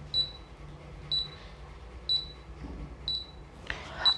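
Bajaj ICX 21 induction cooker's buzzer giving short high beeps about once a second: the pan-detection (metal-sensing) beep of an empty coil, showing the board is sensing for metal again after the no-metal-sense fault was repaired.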